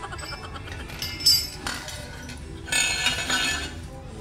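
Metal hand tools clinking and clattering against each other as they are picked up to take off a scooter's stock exhaust pipe: a short clink a little after a second in, then a longer clatter around the third second.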